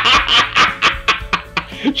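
A man laughing in a quick run of short snickers, over steady background music.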